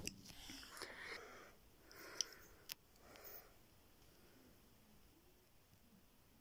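Faint handling of a plastic transforming action figure being moved into its beast mode: quiet rustles and two small clicks in the first three seconds or so, then near silence.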